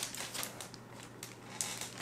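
Plastic and cardboard packaging crinkling and rustling in irregular small clicks as a fake beard is unwrapped, over a steady low hum.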